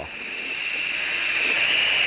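Thrust SSC's twin Rolls-Royce Spey jet engines on full reheat: a steady rushing noise with a strong high-pitched edge, growing steadily louder.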